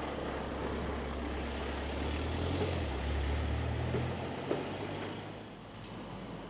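Street traffic: a motor vehicle's low engine rumble that swells about two seconds in and fades away near the end as it drives past, over a steady outdoor hiss.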